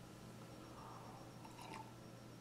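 Near silence: room tone with a steady low hum, and a few faint small clicks near the end.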